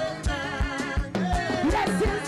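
Live gospel praise-and-worship music: a team of singers leading a song, with voices sliding between sustained notes over band accompaniment with a steady beat.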